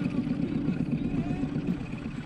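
A boat motor running steadily at low trolling speed, a continuous low rumble.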